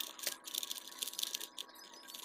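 Faint, irregular clicking of a stickerless 3x3 plastic speed cube's layers being turned quickly by hand.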